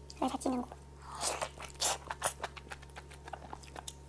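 Close-miked eating sounds: wet bites, smacks and chewing of noodles and soft braised goat leg, in quick irregular clicks.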